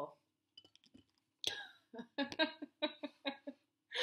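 A woman laughing: a string of about ten short, quick laugh pulses starting about one and a half seconds in, after a few faint clicks.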